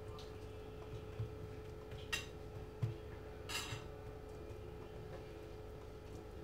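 Wooden spoon spreading and pressing minced-meat filling into a metal tart tin: a few soft knocks and two brief scrapes near the middle, over a faint steady hum.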